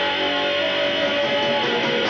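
A live rock band playing: electric guitars strummed over drums and keyboard, steady and loud, with one note held for about a second in the middle.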